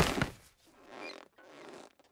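Cartoon sound effects: the end of a crash dies away in the first half second, followed by two faint, short creaking rubs.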